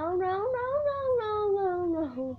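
One long meow-like vocal cry that rises in pitch and then slowly falls away over about two seconds.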